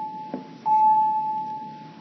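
A single electronic chime note from a school intercom speaker, struck about every second and a half and fading after each strike, the signal that the announcements are starting.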